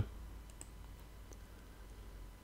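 A few faint computer mouse clicks, short and sharp, over a low steady background hum.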